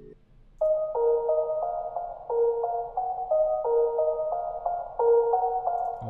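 Soft synthesizer melody from FL Studio's FLEX instrument, its notes played at very low velocity so they sound smooth and legato, with reverb. About half a second in, a short stepping phrase of overlapping mid-pitched notes begins and is played about twice.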